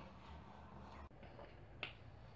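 Near silence: faint room tone, with a single short click near the end.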